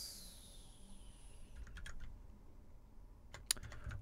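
A few keystrokes on a computer keyboard as a command is typed, coming in two short clusters: about two seconds in and again near the end.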